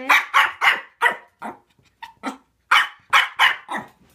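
Pomeranian puppy barking repeatedly, about a dozen short barks in two quick runs with a brief lull around halfway: barking out of frustration at food on the step below that he is too scared to go down the stairs to reach.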